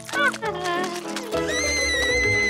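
Cartoon character's wordless vocal sounds over background music: a short wavering squeal near the start, then a long, steady, high-pitched yell beginning about a second and a half in.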